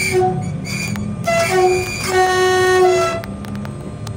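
RER electric train's two-tone horn sounding a run of blasts, short ones switching between a low and a higher note, then a longer low blast of about a second that stops a little after three seconds in, over the train's steady low running rumble.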